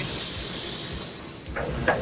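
Sauce ladled into a hot wok of macaroni, hissing and sizzling as the liquid hits the hot metal, the hiss dying down after about a second and a half.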